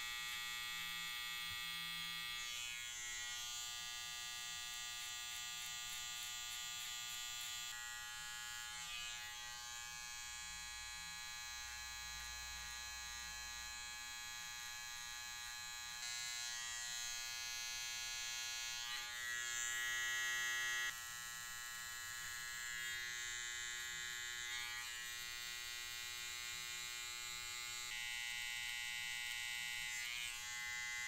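Gold cordless electric hair trimmer running with a steady buzz while it cuts short hair, its tone shifting a few times.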